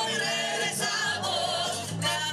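A Uruguayan carnival revista troupe performing live: several voices singing together in chorus over band accompaniment.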